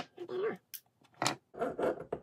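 Hand tools clacking on a wooden workbench, one sharp click right at the start and another about a second later, as flush cutters are set down and a metal file is picked up. Short muttered vocal sounds fall between and after the clicks.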